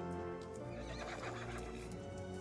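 A horse whinnies for about a second in the middle, over steady background music.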